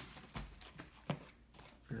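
Two brief knocks about a second apart as a small cardboard box is picked up and handled on a wooden table.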